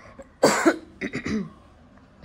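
A woman coughs: one loud cough about half a second in, then a few quicker, softer coughs.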